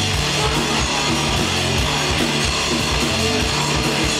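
Live rock band playing loudly: electric guitars, bass guitar and drums in an instrumental passage without vocals.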